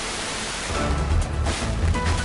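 FM radio receiver hiss that gives way about two thirds of a second in to a brief burst of music from a distant FM broadcast station on 98.0 MHz. The station comes in by meteor scatter, and the hiss drops away as the signal strengthens.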